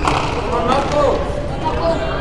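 Indistinct voices talking in a large hall, with a single sharp knock at the very start.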